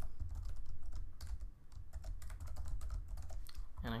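Typing on a computer keyboard: a run of quick, irregular key clicks with a brief pause about one and a half seconds in, over a low steady hum.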